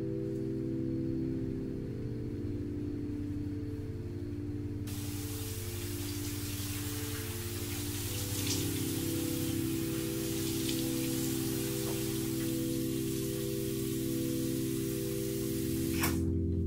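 Soft background music of sustained low chords that shift slowly. About five seconds in, a steady hiss of noise comes in over the music.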